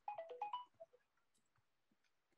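A brief electronic tone sequence, like a phone ringtone or notification chime: about five quick beeps stepping up and down in pitch within the first second.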